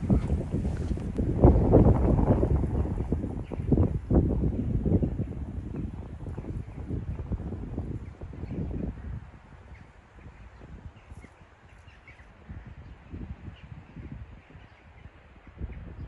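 Wind buffeting the microphone in irregular low gusts, strongest in the first half and dropping away to a faint rustle after about nine seconds.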